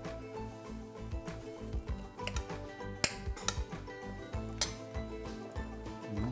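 Background music with a steady beat, with a few sharp clinks of a knife and fork against a plate while a portion of food is cut, two of them about three and four and a half seconds in.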